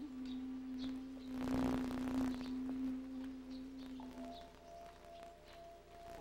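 Soft ambient background music of long held pure tones, like a singing bowl: one steady low note fades out about four and a half seconds in while a higher note takes over. A brief rushing swell about a second and a half in is the loudest moment.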